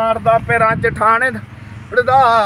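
A man's voice in short pitched phrases, falling quieter for the last half second.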